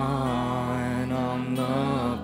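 A live worship band: singers hold long sustained notes over acoustic guitar.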